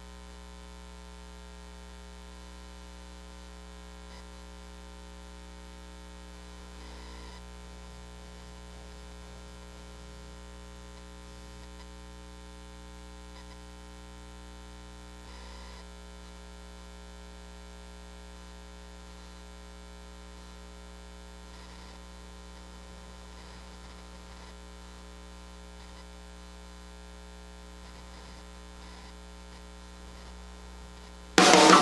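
Steady electrical mains hum, a low buzzing drone that does not change, with two faint brief soft sounds about seven and fifteen seconds in.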